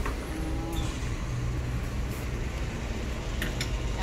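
A steady low mechanical hum with an even background of outdoor noise, and a few faint clicks near the end.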